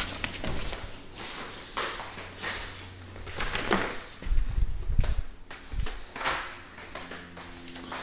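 Footsteps and handling noise in a small indoor space: a string of irregular short scuffs and knocks, with a couple of heavier low thumps around the middle.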